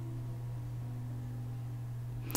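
Steady low hum with a faint background hiss; no handling or paper sounds stand out.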